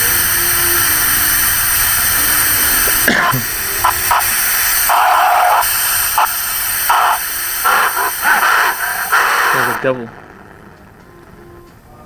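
Loud static hiss with choppy, glitchy bursts over it, dropping suddenly to a much quieter hiss about ten seconds in.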